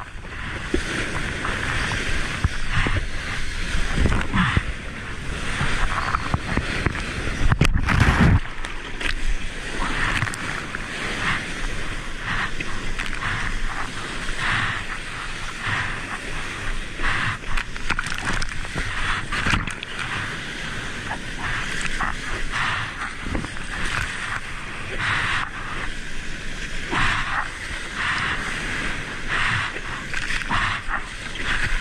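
Seawater sloshing and splashing right at a water-level microphone as a surfboard is paddled through shallow whitewater, over the steady noise of breaking surf. A deeper rumble of surf fills the first several seconds and then falls away.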